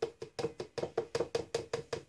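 A red plastic measuring spoon rapped quickly and repeatedly against a plastic jug, about seven knocks a second, each with a short hollow ring.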